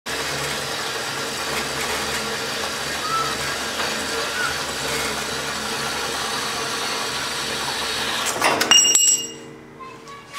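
Horizontal metal-cutting bandsaw running steadily as it cuts through a mild steel bar. Near the end, the cut finishes with a metallic clank and a brief ringing, and the saw falls silent.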